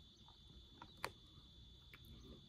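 Near silence: room tone with a faint steady high-pitched whine and low hum, and one faint click about halfway through.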